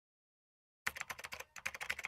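A quick run of key clicks like typing on a keyboard, starting a little under a second in, with a short pause midway.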